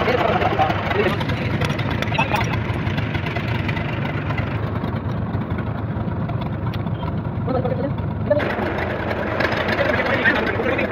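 An engine running at a steady idle throughout, with people's voices over it near the start and again near the end.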